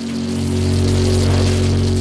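A transition sound effect between podcast segments: a low, sustained synth chord under a rushing whoosh of noise, swelling up and then fading away.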